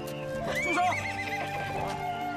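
A horse whinnies, one wavering neigh of about a second, over steady background music.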